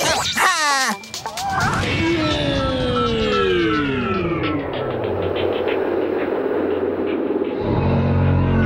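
Cartoon sound effects: a few quick rising zips in the first second, then a long falling glide over a noisy whoosh. Music with a low sustained tone comes in near the end.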